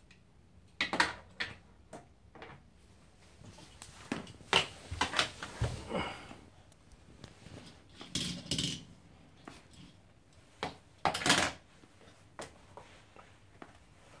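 Toy cars clattering and knocking against a hard surface and each other: a scatter of irregular clicks and clacks with quiet gaps between, the loudest about a second in, around the middle and near 11 seconds.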